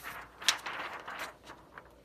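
A printed DTF transfer film sheet being lifted off the heat press and handled: a sharp crackle about half a second in, then the stiff plastic sheet rustling, with a couple of light ticks near the end.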